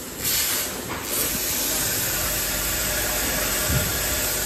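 Steady hissing noise of factory machinery, dipping briefly at the start and again about a second in.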